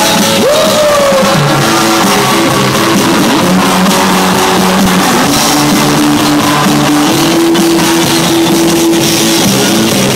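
Live rock band playing loudly and steadily, with held notes throughout and a pitch bend about half a second in.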